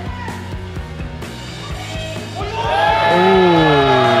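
Music with a steady beat; from about two and a half seconds in, loud yelling rises over it as the heavy squat is driven up out of the hole.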